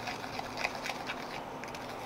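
A small spoon stirring a thick homemade watercolour paste in a small cup: soft, irregular scraping with faint light clicks against the cup.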